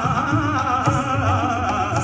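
Sikh devotional kirtan: a man sings a wavering, ornamented melodic line, accompanied by two harmoniums and tabla.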